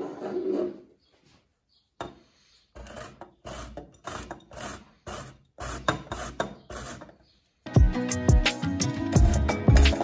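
Young zucchini rasped down a stainless steel box grater into a glass bowl, in steady strokes about twice a second. Near the end, louder background music comes in over it.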